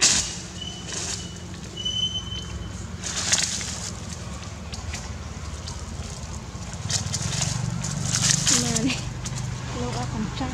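Rustling in dry leaves and undergrowth over a steady low hum, with a thin high whistle-like call twice in the first three seconds and faint voices near the end.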